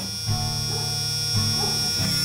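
Large 12 V brushed DC motor spinning freely at high speed with no load, drawing about an amp: a steady high whine over a low hum.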